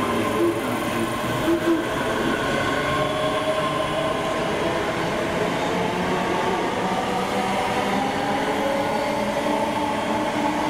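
ScotRail Class 385 electric multiple unit pulling away from the platform, its traction motors whining in several tones that slowly rise in pitch as it gathers speed, over the rumble of the wheels. There are a few short tones in the first two seconds.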